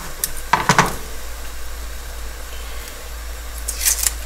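A knife knocks a few times on a plastic chopping board as an onion is trimmed, under a steady faint sizzle of beef mince browning in a pot. Near the end comes the crisp, papery crackle of the onion skin being peeled off.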